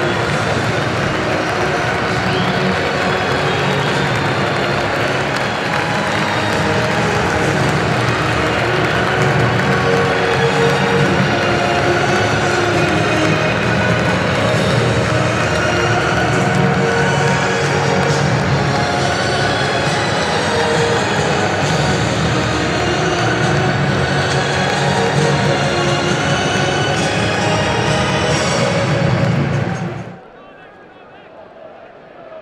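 Music playing over the cheers and applause of a football stadium crowd, steady throughout; it cuts off suddenly at the end.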